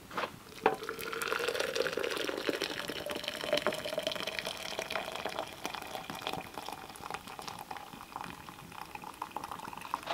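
Hot water poured from a kettle into a glass French press, a steady splashing stream whose pitch rises as the vessel fills over the first few seconds. A couple of light knocks as the pour begins, and another near the end.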